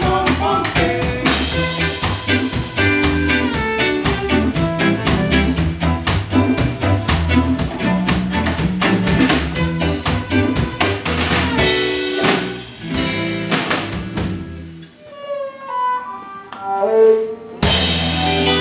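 Live band playing an instrumental stretch of a reggae song, with drum kit, bass, electric guitars and a bowed viola. About fifteen seconds in, the band drops out to a few sparse single notes, then comes back in loudly near the end.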